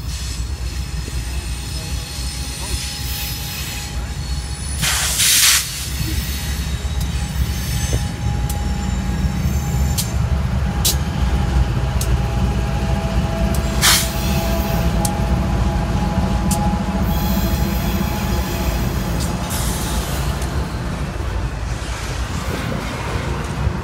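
Freight train's diesel locomotives passing close, engines running with a heavy low rumble, then the steel wheels of double-stack container cars rolling by on the rails. A brief loud rushing burst comes about five seconds in, and sharp clicks and a thin squeal ride over the rumble later on.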